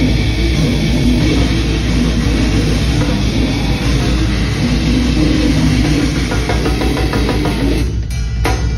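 Live heavy metal band playing loud: distorted Jackson electric guitar over a full drum kit, the sound dense and unbroken. Near the end the drumming settles into a fast, even run of hits.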